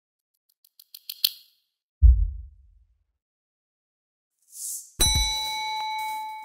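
Intro sound effects: a quick run of high clicks, a deep boom that dies away, then a short whoosh leading into a struck, bell-like ding that rings on for over a second.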